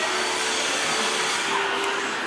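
A steady, even rushing noise, like air from a blower, with a couple of faint held tones under it.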